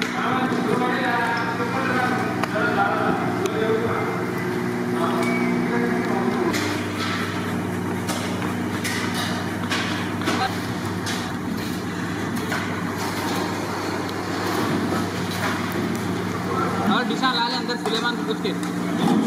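Indistinct background voices over a steady low mechanical hum, with a few scattered clicks and clatters.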